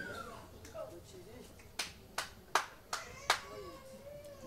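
Five sharp hand claps in an even rhythm, a little under three a second, starting about two seconds in, over faint voices in the room.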